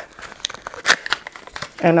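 Packaging of a new, unopened face primer being opened by hand: an irregular run of crinkling and tearing with sharp clicks, the loudest about a second in.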